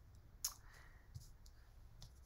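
Near silence of a small room, broken by one sharp click about half a second in and a couple of fainter ticks later.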